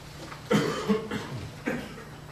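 A man coughing three times in quick succession.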